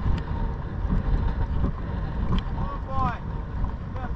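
Wind buffeting the microphone of a camera worn by a rider on a walking horse: a steady low rumble, with a few faint clicks of hooves on a stony dirt track.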